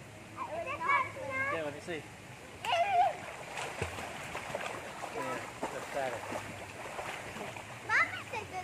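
Water splashing as children swim and kick in a swimming pool, with children's high-pitched calls and shouts, loudest about a second in and again near three seconds.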